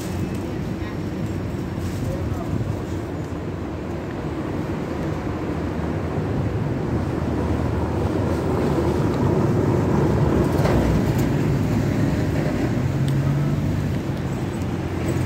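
City street ambience: a steady low rumble of motor traffic, growing slightly louder toward about ten seconds in.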